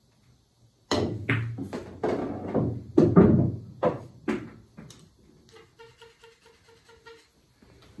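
A pool shot on a Diamond pool table: about a second in, a sharp cue-on-cue-ball hit starts a quick run of ball-on-ball clacks and cushion knocks as the red ball is pocketed. Then comes a softer, even run of ticks, about three a second.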